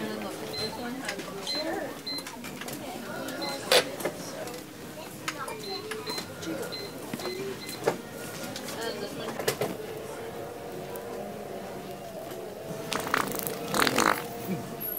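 Shop ambience with indistinct voices, a short high beep repeating about twice a second in two runs, and a few sharp clicks.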